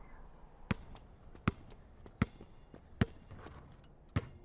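A basketball bouncing on a hard floor: four sharp bounces evenly spaced about three-quarters of a second apart, with fainter ticks between them.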